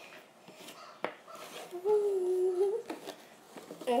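A person humming one steady, level note for about a second, midway through, after a single sharp click about a second in.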